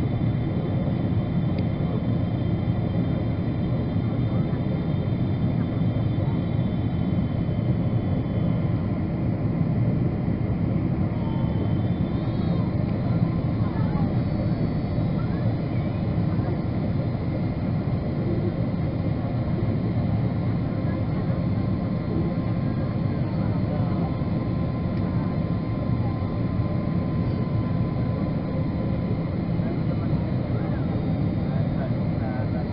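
Steady jet-airliner cabin noise heard inside a Boeing 777 beside its engine: the constant rush of the engines and airflow, with faint steady high whining tones above it.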